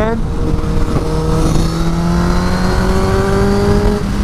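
Sport motorcycle engine running at highway speed, its pitch climbing slowly as it gains revs, with wind rushing over the helmet microphone.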